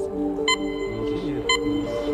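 Quiz-show thinking music: a held electronic drone with a bright ping sounding once a second, twice here, marking the answer timer.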